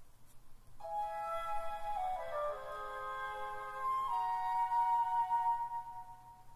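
Recorded music excerpt of a piece built on the whole-tone scale. Several sustained notes sound together from about a second in, a line steps downward partway through, and held notes follow.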